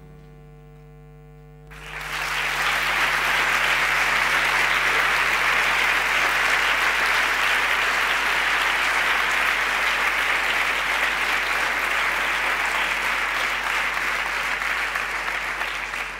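An audience applauding steadily, breaking out suddenly about two seconds in as the last held notes of music die away.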